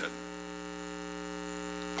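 Steady electrical mains hum, a stack of even, unchanging tones.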